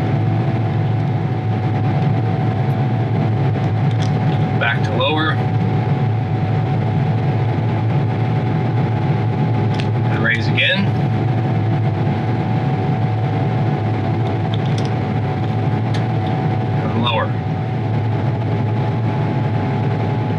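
Steady drone of a John Deere S700 series combine's engine held at high idle, heard from inside the cab while the feeder house raise speed calibration runs.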